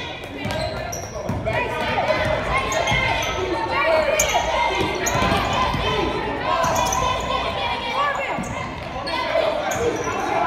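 Basketball game in a large gym: the ball bouncing on the court as it is dribbled, with players and spectators calling out throughout, echoing in the hall.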